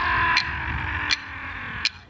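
Aboriginal song with clapsticks struck in a steady beat, three sharp strikes about three-quarters of a second apart, under a singer's held chanted note that fades out about a second in.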